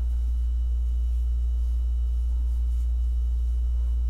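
Steady low hum with no other sound standing out.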